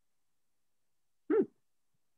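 Near silence, then a single short "hmm" from a person's voice about a second and a quarter in.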